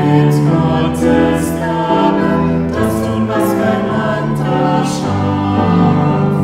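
A small mixed choir of men's and women's voices singing a German hymn in parts, with piano accompaniment.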